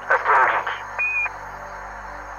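Radio-static sound effect for a channel logo sting: loud crackling bursts of static in the first half-second, a short high beep about a second in, then steady hiss.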